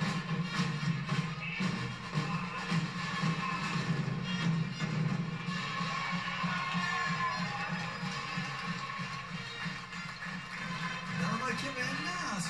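Street percussion band drumming a steady rhythm on marching drums, heard through a television's speakers.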